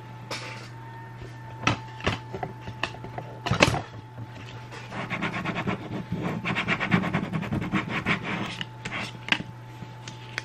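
A plastic card scraped quickly back and forth over transfer tape on a tabletop, burnishing vinyl onto it, in a dense run of strokes from about five seconds in. Before that, a few sharp clicks and crackles of the tape and sheet being handled, over a low steady hum.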